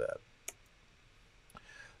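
A single sharp mouse click about half a second in, advancing a presentation slide, with a much fainter click about a second later.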